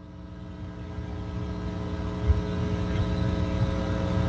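A steady low-pitched tone with several overtones over a low rumble, slowly growing louder.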